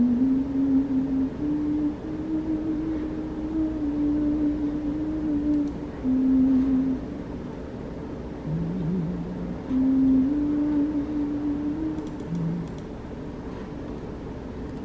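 A slow, low melody of single held notes stepping up and down, over a steady background hum.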